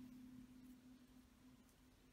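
Near silence: room tone with a faint low steady hum that fades away toward the end.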